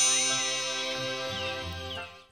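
Intro jingle ending on a bell-like chime that rings on and slowly dies away, with a sparkling shimmer on top, then cuts off abruptly.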